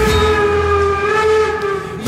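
A singer's voice holding one long note at a steady pitch, with the band's bass dropping away under it just after it starts. The note sags slightly in loudness near the end before the full band comes back in.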